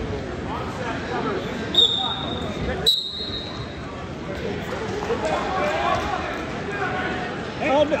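Two whistle blasts, a short one about two seconds in and a longer one about a second later, typical of a wrestling referee's whistle, over steady crowd chatter in a gym.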